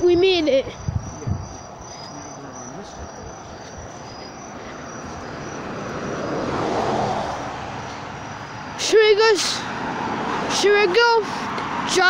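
A car passing on the road: a smooth swell of tyre and engine noise that rises to a peak about seven seconds in and then fades. Short voice sounds follow near the end.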